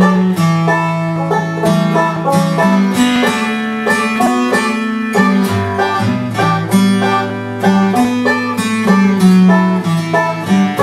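Banjo and acoustic guitar playing an instrumental bluegrass break with no singing, the banjo picking fast notes over the guitar's strummed rhythm.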